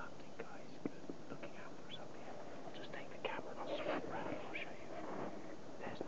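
A man's low, breathy voice close to the microphone, with no clear words. A small knock comes under a second in.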